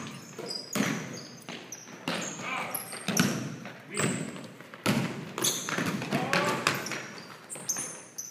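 Basketball bouncing on a hardwood gym floor during play, irregular bounces echoing in the large hall, with a high squeak partway through.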